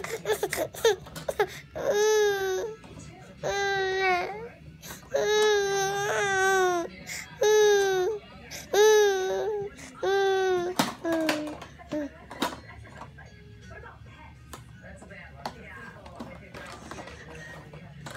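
A baby crying in a run of about eight wails, each about a second long and dropping in pitch at its end. After about eleven seconds the crying stops, leaving only faint clicks.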